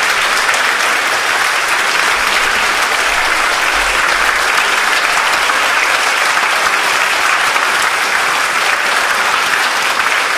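Concert audience applauding, a steady, dense clapping that does not let up.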